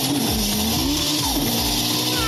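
A rally car's engine revving, its pitch rising and falling, with a steady hiss of spraying gravel, over music with a regular bass beat.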